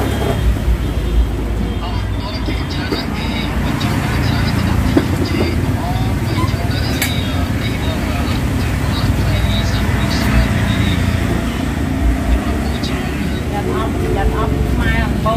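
Steady road-traffic rumble with people talking over it.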